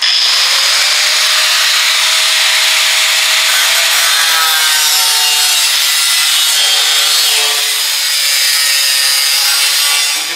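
Cut-off wheel slicing through the sheet steel of a 1960 Chevy Impala fender in one continuous cut, a loud steady high-pitched grinding that eases slightly about eight seconds in.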